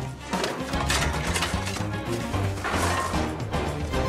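Fast chase film score with several sharp crashes and whacks over it, the loudest near the start and about two-thirds of the way through.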